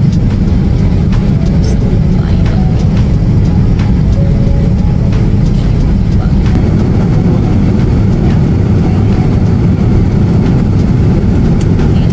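Loud, steady low roar of an airliner's jet engines and rushing air heard from inside the passenger cabin.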